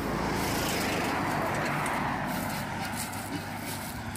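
A vehicle passing at highway speed: a rush of tyre and road noise that swells over the first second or two, then eases away.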